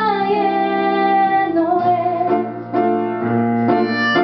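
Live band music: a woman's voice sings long held notes in the first half over piano, electric bass and drums.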